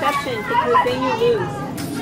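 Several young people's voices talking and calling over one another, not clearly made out, with a laugh near the end.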